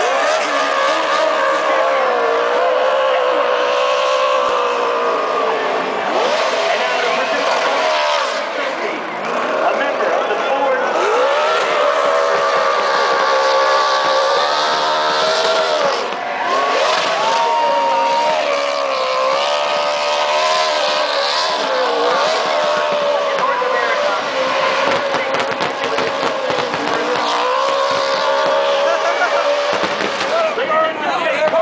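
NASCAR Cup car's V8 engine held at high revs during a burnout, its pitch wavering up and down as the throttle is worked, over the hiss and squeal of the spinning rear tyres.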